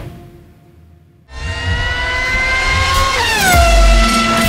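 Background music fades down. About a second in, a channel-logo sting starts suddenly: a car engine revving sound effect over music, rising slowly in pitch, then dropping near the end.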